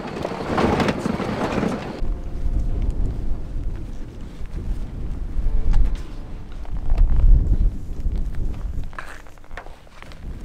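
Truck driving over a rough dirt track, a rattling rush of road noise that cuts off abruptly about two seconds in. Then wind buffeting the microphone as a low rumble, with faint rustling and footsteps in grass near the end.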